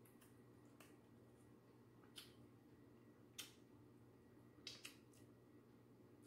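Near silence broken by a handful of faint, short clicks as a small plastic sauce cup is handled and its lid opened.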